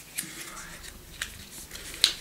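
A few light clicks and rustles from a MAC lipstick tube being handled, the two sharpest about a fifth of a second and just over a second in.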